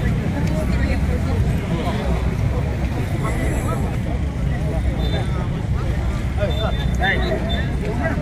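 Crowd chatter: many people talking over one another at once, with a steady low rumble underneath.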